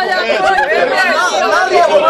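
Several voices talking over one another in lively chatter, with a man's voice loudest.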